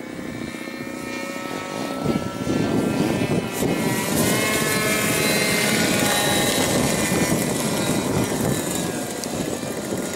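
Radio-controlled model aeroplane's motor and propeller, growing louder as the plane comes in low to land and rolls past, its pitch sliding around the loudest point before easing off a little near the end.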